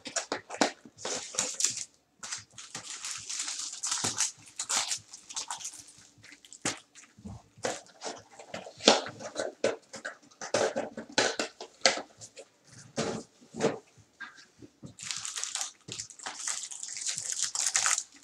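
Cellophane-wrapped trading-card packs being handled on a table: irregular plastic crinkling with light clicks and taps, in longer crinkly stretches a couple of seconds in and near the end.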